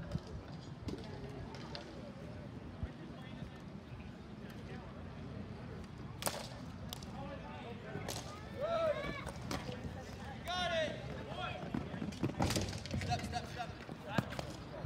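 Ball hockey rink din: players' voices shouting across the rink over a steady low background, with a few sharp clacks of sticks and ball, the loudest about six, eight and twelve seconds in.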